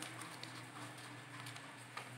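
Faint rustling and a couple of light taps from paper pattern sheets being folded and handled by hand, over a low steady hum.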